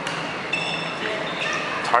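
Several short, high-pitched squeaks from sneakers on a sports hall floor as players shift at the start of a dodgeball set, over faint voices in the hall.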